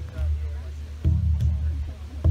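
Large laced-hide drum struck with padded beaters in a heartbeat rhythm: a deep boom rings and dies away, then a double beat lands about a second in and rings on.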